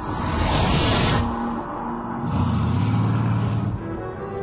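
Bugatti Veyron's quad-turbocharged W16 engine running: a loud rush of engine noise in the first second, then a lower, steady engine note from about two seconds in.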